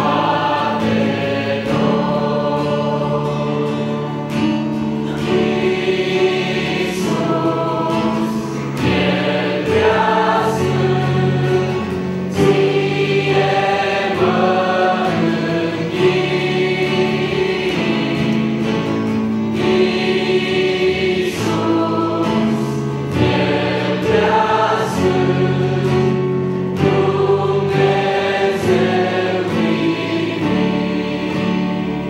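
Mixed youth choir singing a Romanian hymn in unison, accompanied by an acoustic guitar.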